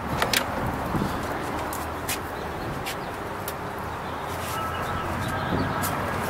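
A vehicle engine idling with a steady low hum, with scattered sharp clicks over it.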